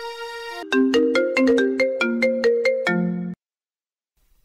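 Mobile phone ringtone playing a quick melody of short notes for about two and a half seconds, then cut off abruptly as the call is answered. Before it, a held note of background music.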